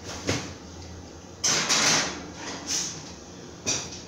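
Kitchen oven door opened, a metal baking tray slid in onto the rack and the door shut. A loud scraping, sliding stretch comes about one and a half seconds in, with sharp knocks of door and metal later on.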